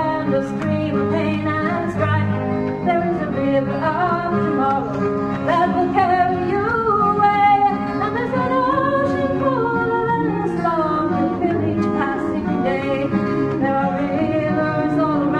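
Live recording of a folk-style song: a woman singing long, gliding notes over guitar accompaniment.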